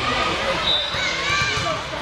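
Many voices of players and spectators talking and calling at once in a large gym, with a few volleyball thumps.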